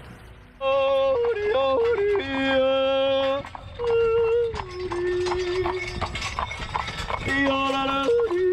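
A man yodeling in short phrases, his voice leaping back and forth between a high and a low note. It starts about half a second in and breaks off briefly in the middle.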